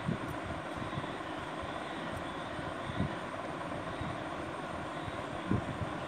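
Steady background noise, a hiss over a low rumble, with a few soft low thumps, the clearest about halfway and near the end.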